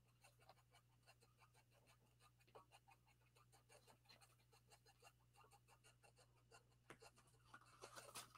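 Near silence: faint, light scratching and rubbing of fingertips on paper as cut pieces are pressed down onto a card, over a low steady hum.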